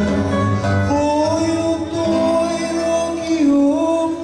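Live fado: a male singer holding long sung notes over a Portuguese guitar and guitar accompaniment.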